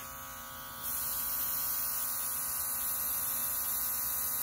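Cordless portable touch-up spray gun's small motor running with a steady buzz; about a second in the trigger opens and a steady hiss of air and coating spraying onto a tile joins it.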